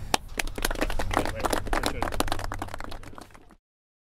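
A group of people clapping in applause, fading near the end and then cutting off suddenly.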